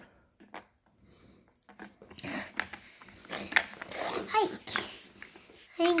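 Scattered light clicks and knocks of hard plastic toy pieces handled on a tile floor, starting about two seconds in, mixed with a few brief soft vocal sounds.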